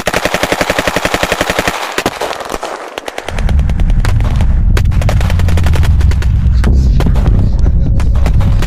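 Automatic gunfire sound effect breaking out abruptly, a rapid string of shots for about two seconds. After a short dip, a loud deep rumble starts about three seconds in, with scattered shots over it.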